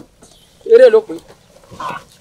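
A man's loud shouted cry about three-quarters of a second in, followed by a shorter, weaker vocal sound near the end.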